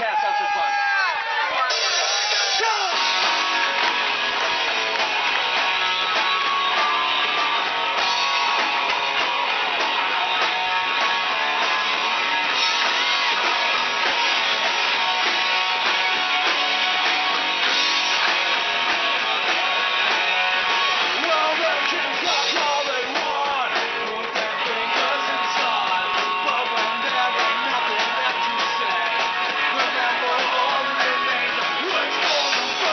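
Live rock band playing: electric guitars strummed through amps with a drum kit, coming in at full volume about two seconds in and then running on steadily.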